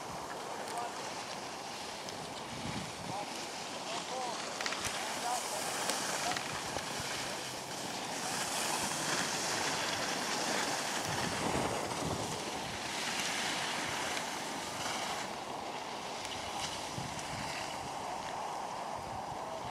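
Skis sliding and scraping over hard-packed snow through a series of turns, with wind rushing over the microphone; the rush swells twice in the middle stretch.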